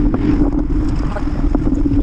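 Wind on the microphone of a camera on a moving bicycle, with steady rumble and a low hum from riding over pavement, and a few light rattles.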